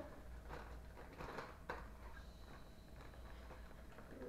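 Faint crinkling and rustling of a chip bag as chips are taken out of it, trying to keep as quiet as possible, in a few short rustles during the first two seconds.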